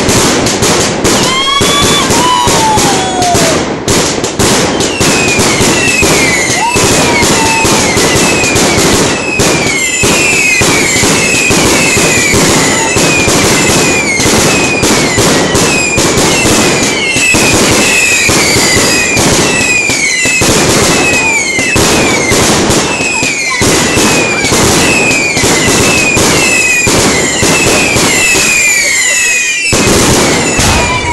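Small consumer fireworks firing a continuous close-range barrage: dense crackling bangs under a string of short falling whistles, one after another. The barrage is loud throughout, with a brief lull just before the end and then another burst.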